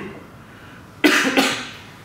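A man coughing: two quick coughs about a second in.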